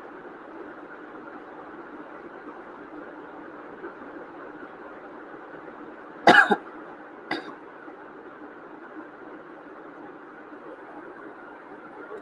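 A person coughs twice: one loud cough about six seconds in and a softer one about a second later, over a steady background hiss.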